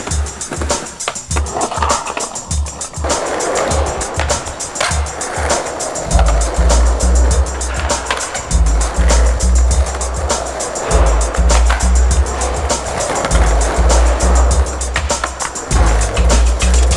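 Skateboard wheels rolling on concrete, with scattered clicks of the board, under background music whose heavy bass beat grows stronger about six seconds in.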